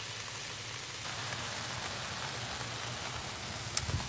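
Sliced vegetables sizzling in oil on a hot Blackstone flat-top griddle: a steady, even hiss.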